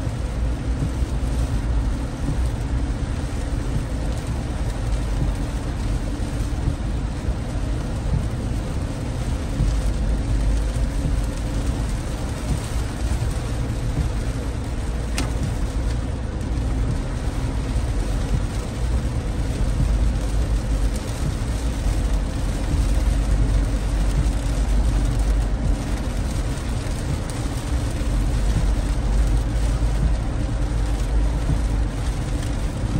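Car cabin noise at highway speed in heavy rain: a steady low rumble of tyres on a wet road, with rain hitting the windshield and body.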